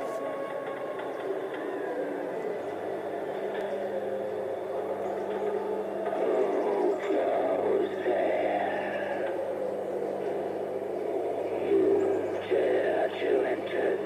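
Animatronic Halloween caretaker prop playing its recorded voice through a small built-in speaker, growing stronger about six seconds in, over a steady low hum that starts a couple of seconds in.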